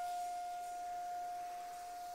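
Soprano saxophone holding one long, soft note that slowly fades, its tone thinning to an almost pure pitch.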